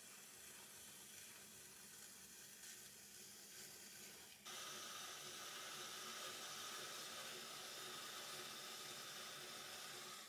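Faint, steady wet hiss of a wooden rib and fingers rubbing against spinning wet clay on a potter's wheel, growing louder about halfway through.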